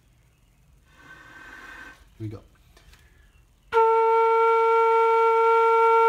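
Homemade PVC flute made from 3/4-inch Schedule 40 pipe and keyed in F, playing one long, steady B-flat that starts about two-thirds of the way in. It is a tuning check of the B-flat after its finger hole was widened and the flute was warmed up.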